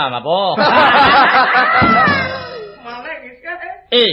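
Several people laughing together, many voices overlapping in a burst that rises about half a second in and dies away after about two seconds.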